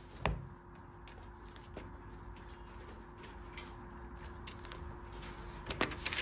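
Quiet room tone with a faint steady hum, broken by one sharp click just after the start and a few faint clicks near the end.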